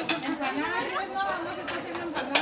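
Background chatter of several women talking at once, with a few sharp clicks near the end.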